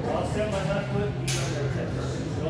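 Indistinct voices talking in a large indoor hall, with one brief burst of noise a little past halfway.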